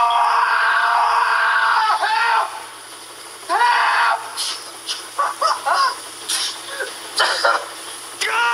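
A man crying out in pain as his hand is burned on a hot electric stove burner: one long strained cry for about two and a half seconds, then after a pause a shorter cry and a run of short broken gasps and groans.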